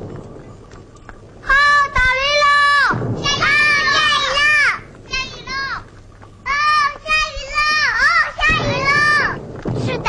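Children's high-pitched voices in two long stretches, about a second and a half in and again from about six and a half seconds, at times overlapping.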